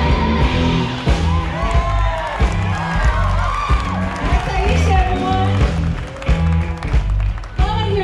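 Live band playing electric guitars, bass and drums to a steady beat, with a woman's voice at the microphone over it.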